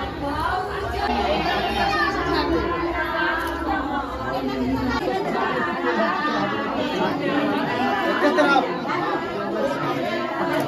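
Many people talking at once: dense, overlapping chatter of a crowd of voices, with a low rumble under the first half that stops suddenly about halfway through.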